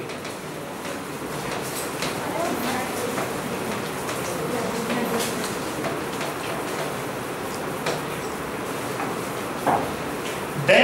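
Steady room noise with a low hum, and a few faint clicks of a pen tapping and writing on an interactive touchscreen board.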